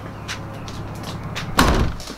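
A glazed front door swung shut with a loud slam about one and a half seconds in, over a low steady hum.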